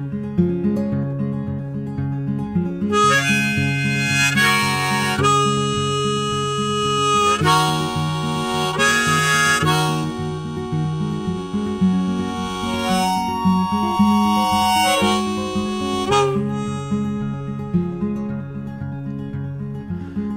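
Instrumental break of a folk song: a harmonica solo over steadily strummed acoustic guitar. The harmonica comes in about three seconds in and drops out around sixteen seconds, leaving the guitar on its own.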